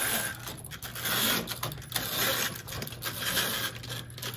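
Motorized window shade running as it rises: a steady mechanical whir with fine rapid rattling.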